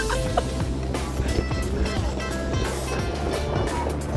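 Background music with a steady beat and held notes.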